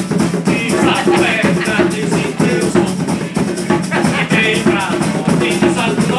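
Live band playing the upbeat marimbó dance rhythm: acoustic guitar, keyboard and bongos over a quick, steady percussion beat.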